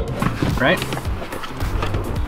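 Mazdaspeed 3 rear seat cushion pulled straight up, its retaining clip letting go with one sharp click at the very start, over background music.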